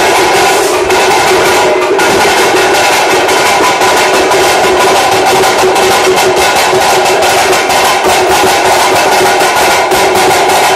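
Loud festival drumming: rapid, even drum strokes keep up without a break, over a steady held tone.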